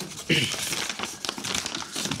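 A sheet of paper crinkling and rustling as it is handled and unfolded, a run of small crackles.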